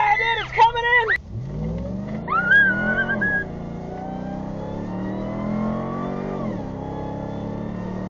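A vehicle engine revs up about a second in, then keeps running with its pitch rising and falling. Before that, a loud voice is heard and cuts off abruptly.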